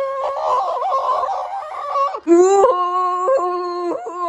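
A person's voice doing a long, drawn-out screaming wail for a toy frog character. It wavers roughly for about two seconds, breaks off briefly, then is held on a steady pitch with small jumps up and down.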